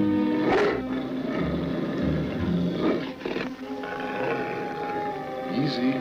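A dog snarling in several harsh bursts, over a held orchestral music score.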